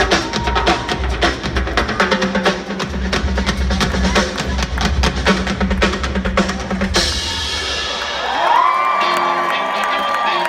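Live band playing a dense, drum-heavy passage on drum kit and percussion with a heavy bass drum, which stops about seven seconds in. A large outdoor crowd then cheers, with whistles and whoops rising over it.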